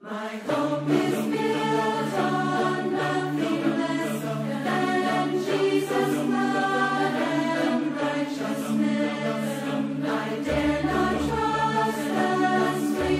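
A large choir singing in harmony, many voices together at a steady full volume; a deeper bass sound joins near the end.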